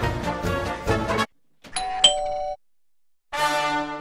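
A two-note 'ding-dong' doorbell chime, a higher note then a lower one, cutting off after about a second. It sits in a gap of silence after background music stops about a second in; the music starts again near the end.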